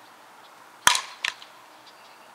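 Fastpitch softball bat hitting a front-tossed ball: one sharp crack a little under a second in, followed by a fainter knock about a third of a second later.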